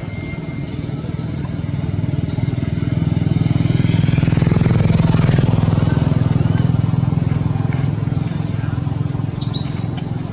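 A motor vehicle's engine passing by, a steady low hum that grows louder to a peak about halfway through and then fades. A few short bird chirps sound near the start and end.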